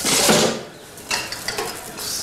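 Wire shopping cart rattling and clicking as things are handled in and out of it. There is a loud clatter in the first half second, then a few light clicks.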